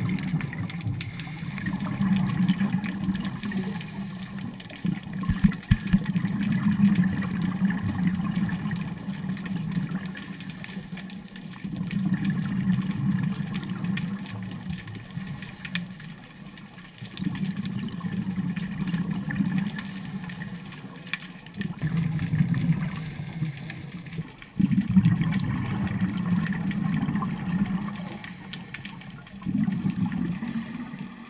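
Scuba diver's breathing through a regulator heard underwater: long low rumbling bursts of exhaled bubbles every few seconds, with quieter pauses for each inhale between them. A couple of sharp knocks about five seconds in.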